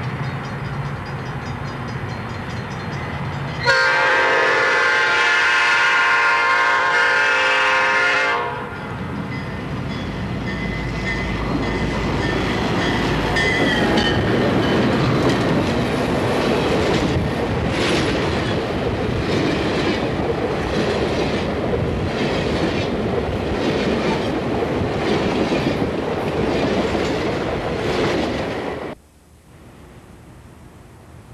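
Two EMD F40PH diesel locomotives rumble in on an Amtrak passenger train, then sound a long chime air-horn blast of about five seconds. The train then passes close by, a steady roar of wheels on rail with a run of clacks over rail joints, until the sound stops abruptly near the end.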